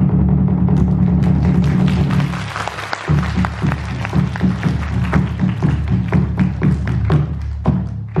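Chinese opera percussion led by a large barrel drum beaten with sticks: a dense low roll for the first three seconds gives way to a run of quick separate strikes.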